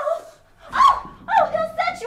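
A voice giving about four short, high-pitched yelps in quick succession, each a bent, rising-and-falling cry.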